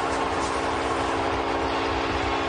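Arena goal horn sounding one long steady blast over a cheering hockey crowd, signalling a home-team goal.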